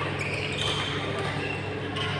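Badminton hall sound: rackets striking shuttlecocks and short squeaks of shoes on the court mats, over indistinct voices and a steady low hum.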